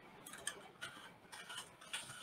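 Faint computer keyboard keystrokes: a handful of light, irregularly spaced key clicks as a name is typed.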